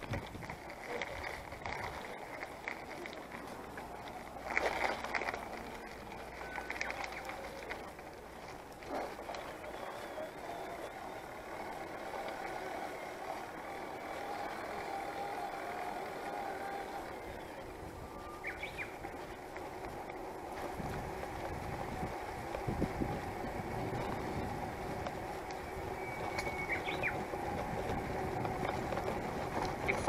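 Yamaha PAS City-V electric-assist bicycle being ridden along a paved lane: steady tyre and drivetrain noise with a faint steady hum through the middle stretch. A few clicks, and a brief louder rattle about five seconds in.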